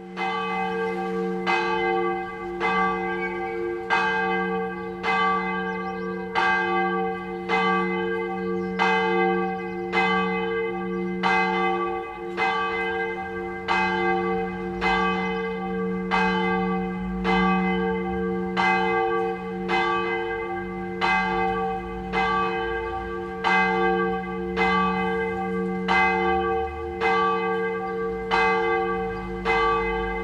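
A bell struck over and over at an even pace, about three strikes every two seconds, each strike sounding the same set of ringing tones that hum on between strikes.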